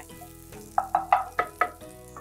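Butter with green chillies and curry leaves sizzling in a frying pan on a gas hob, stirred with a spatula, with a few short louder scrapes and sputters about midway.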